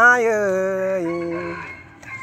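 A singer's voice in Thái folk singing (khắp) holds a long drawn-out note on the phrase-ending vowel. The note slides up at the start, then sags slightly and fades out before the end.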